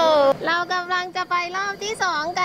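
A high, excited voice holds a cry that slides down in pitch and cuts off about a third of a second in. Then background music comes in: a melody of short, quickly changing notes.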